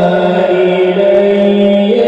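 A man's voice reciting the Quran in a melodic chanting style (tilawat), holding one long note that turns slightly upward near the end.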